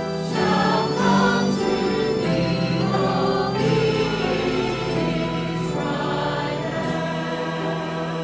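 Church choir singing a hymn in parts, with long held notes that change every second or two.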